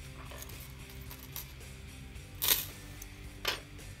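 Soft background music, with a sharp metallic click about two and a half seconds in and a smaller one a second later as heavy-duty needle-nose pliers work open a link of a metal chain.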